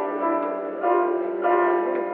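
Piano played live: bell-like chords struck and left ringing, with new chords coming in a little under a second in and again about a second and a half in.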